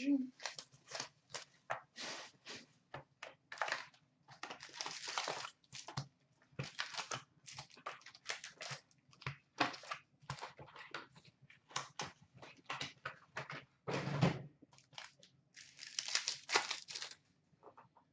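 Sealed hockey card packs and a cardboard hobby box being handled: irregular rustling and crinkling of pack wrappers as packs are pulled from the box and set down on a counter. There is a louder, deeper knock about fourteen seconds in.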